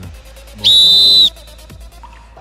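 One short blast on a sports whistle, a steady high-pitched tone lasting just over half a second, starting about half a second in: the signal that the kick may be taken.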